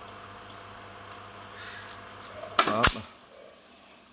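Pioneer RT-1020H three-motor reel-to-reel tape deck winding tape at speed with a steady whir, then the transport clunking to a stop about three seconds in, after which the whir dies away.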